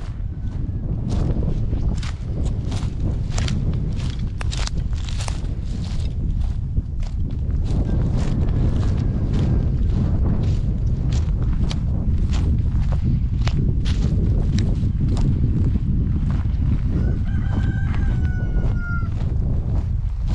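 Footsteps crunching over dry brush and bare ground under a steady low rumble. Near the end a rooster crows once, for about two seconds.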